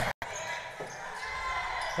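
Basketball being dribbled on a hardwood court over a low, even murmur of an arena crowd; the sound cuts in abruptly after a brief dropout.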